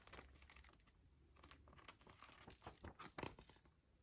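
Faint rustling and soft flicks of paper pages turning in a perfect-bound notebook as it is leafed through, a cluster of small flicks in the second half.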